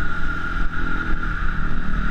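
Off-road trail motorcycle engine running steadily under way, heard from a helmet-mounted camera, with a constant hiss of wind and riding noise over the engine note.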